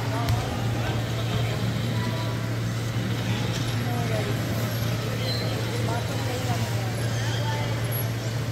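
Steady low hum, with faint voices in the background.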